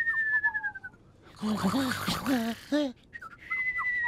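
Comic cartoon-style snoring ("snootling"): a long, slightly falling whistle on the out-breath, a snuffly, voiced snore in the middle, then a second falling whistle near the end.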